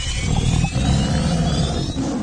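Low rumble with several thin whines rising together in pitch, a tension-building sound effect on an animated film's soundtrack.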